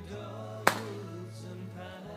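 A single sharp crack as a golf club strikes the ball off an artificial turf hitting mat, about two-thirds of a second in, over background music with singing.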